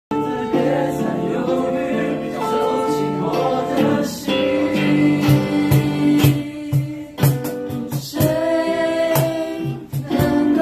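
Live acoustic performance: acoustic guitars and singing, with a steady percussion beat joining about five seconds in.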